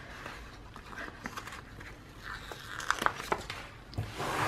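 Soft peeling and rustling of a paper sticker coming off its sticker sheet, with a few small ticks of handling around three seconds in.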